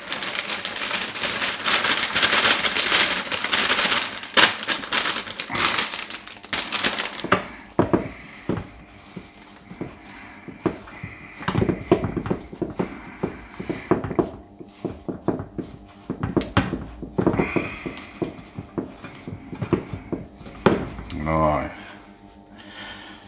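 Plastic bag crinkling and rustling as shredded white cabbage is shaken out of it onto a steel tray of vegetables, dense and loud for the first several seconds. Then quieter rustles and light clicks follow as the cabbage is spread by hand.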